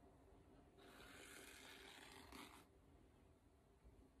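Faint, soft rustle of yarn being drawn by hand across a crocheted panel, lasting about two seconds in the middle of otherwise near-silent room tone.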